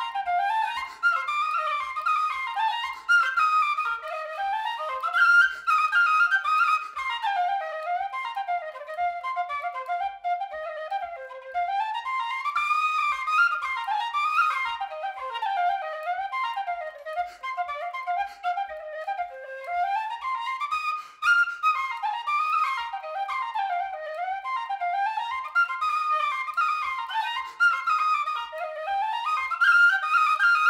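Tin whistle played solo: a fast, ornamented reel in A minor, the melody running quickly up and down. A faint low tap about twice a second keeps time under it.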